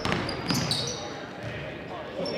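A basketball dribbled on a hardwood gym floor, with sharp bounces at the start and about half a second in, and sneakers squeaking briefly on the court.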